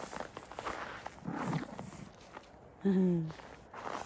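Footsteps crunching on packed snow in a quick uneven patter. A brief low voice sound comes about three seconds in.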